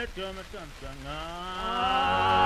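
Background music: pitched tones that slide down and up in short glides, then a long rising note settling into a held chord near the end.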